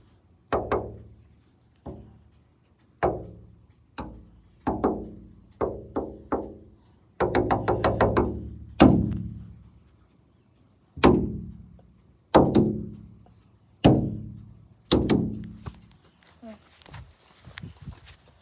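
A struck, pitched instrument played one note or chord at a time, at an irregular pace: about a dozen sharp strikes, each ringing and fading over about a second, with a quick run of notes in the middle.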